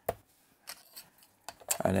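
A few small plastic clicks and taps as a LiPo battery pack is pressed into a radio transmitter's battery bay and its lead tucked into place, with the sharpest click right at the start.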